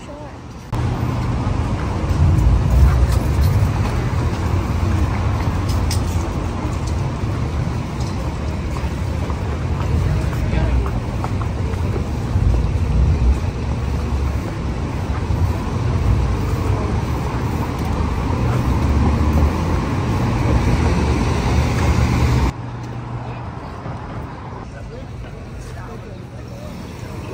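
Wind buffeting the camera microphone: a loud, low rumbling noise that comes on suddenly about a second in and cuts off suddenly near the end.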